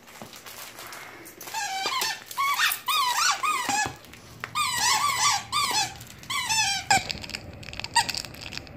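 Squeaker in a plush Grinch dog toy squeaking over and over as a Dalmatian chews it, in three runs of quick squeaks.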